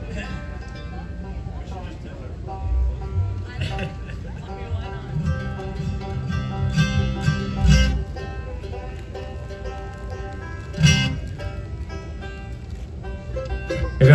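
Scattered, unrhythmic notes picked on bluegrass string instruments, among them banjo and a low held bass note, between songs rather than a tune being played, with a short sharp strum about eleven seconds in.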